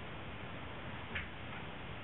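Steady low hiss of background noise, with one short sharp click just past a second in and a fainter click about half a second later.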